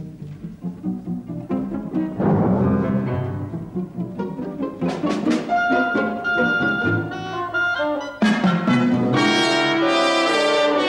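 Symphony orchestra playing a twentieth-century concert work, with the strings bowing. A high note is held in the middle, and about eight seconds in the full orchestra comes in loudly.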